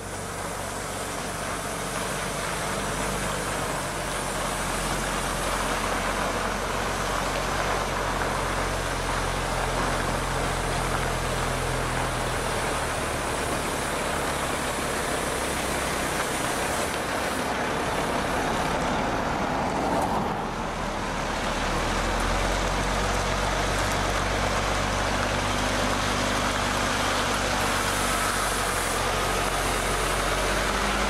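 Cat CT630LS road train's diesel engine pulling away and driving by, a steady low rumble with road and tyre noise. The sound dips briefly about two-thirds of the way through, then runs on a little louder.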